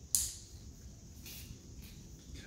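A single sharp click just after the start: a Volvo Penta EVC harness's plastic connector latching shut as its two halves are pushed together, the click that signals a fully seated connection. Fainter handling ticks follow.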